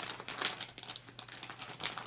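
Glossy gift-wrapping paper crinkling in irregular crackles as hands fold and press it over the end of a wrapped box.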